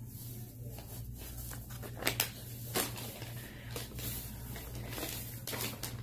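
Plastic packaging being handled: a few scattered crinkles and rustles as a foil-lined treat bag is set down and the next package is picked up, over a steady low hum.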